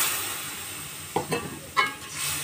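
A cup of water poured into a hot wok of fried-down dried-fish masala: it hisses loudly at first and then dies away. In the second half a metal spatula stirs and knocks against the wok about three times.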